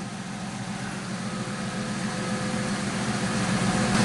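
1999 Ford Mustang idling steadily, a low even engine hum.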